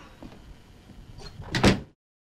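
A door shutting: a few faint knocks, then one loud thud about one and a half seconds in, after which the sound cuts off abruptly.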